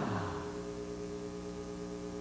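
The tail of an advertising jingle fading out in the first half-second, leaving a steady low electrical hum with many even overtones.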